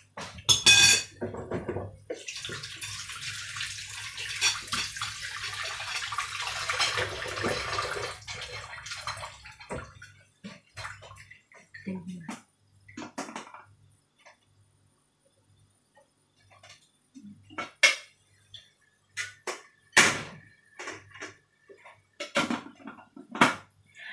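Water running and rushing for several seconds before it fades out. It is followed by scattered clinks and knocks of an aluminium steamer pot and dishes as chicken pieces are loaded into the steamer.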